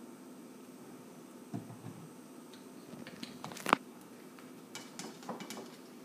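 Scattered knocks and clicks of a glass olive-oil bottle, a spoon and a plastic zip-top bag being handled on a kitchen countertop, over a steady low hum. There is a dull knock about a second and a half in, then a sharp click just before four seconds, the loudest sound, and a few lighter clicks after it.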